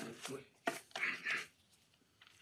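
A few faint taps and knocks and a brief, faint voice, then near silence.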